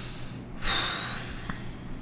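A person breathing out or in heavily: one loud, airy breath lasting nearly a second, with a faint whistle in it, followed by a small click.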